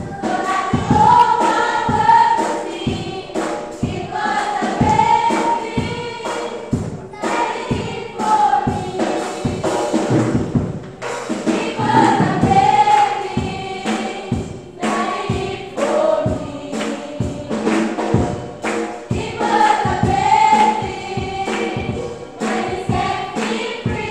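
Small choir singing a gospel song, with a steady beat underneath.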